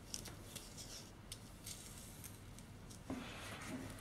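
Faint handling sounds: a scattering of soft, light clicks and ticks as small pearl beads with metal rings and a cord are handled on a tabletop.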